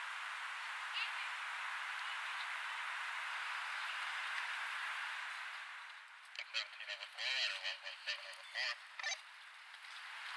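A steady hiss of outdoor noise, then from about six seconds in a string of short, loud voice calls with bending pitch, broken by gaps, over about three seconds.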